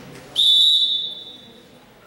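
Volleyball referee's whistle in a gym: one shrill blast starting sharply about half a second in, dying away over about a second.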